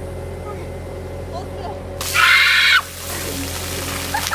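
A compact track loader's diesel engine running steadily with its raised bucket overhead. About two seconds in, a bucketful of ice water pours down onto a girl and splashes on the concrete, with her short, loud, high-pitched scream as it hits, and the pouring and splashing carry on after the scream stops.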